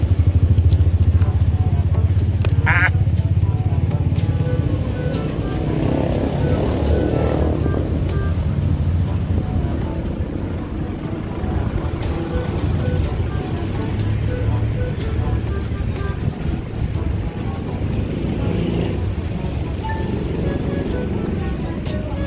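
Small motorcycle engine of a motorcycle-sidecar running at idle with a steady low hum, loudest in the first couple of seconds.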